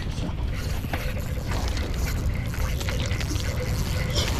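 Water sounds with a steady low wind rumble on the microphone.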